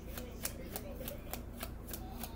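A small deck of letter cards shuffled by hand: a quick run of light card flicks, about five a second.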